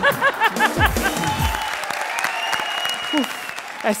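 A man's hearty laughter in quick 'ha-ha' pulses for about the first second, then audience applause over background music holding long notes.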